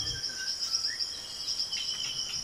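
Rainforest insect chorus: a steady, high-pitched shrill drone, with a few faint bird chirps in the first second.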